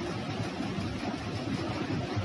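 Steady background noise: a low rumble with a fainter hiss above it, with no distinct events.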